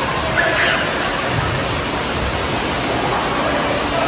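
Steady rush of running water echoing in a large indoor waterpark hall, from water flowing down a water slide and pouring from the pool's waterfall feature.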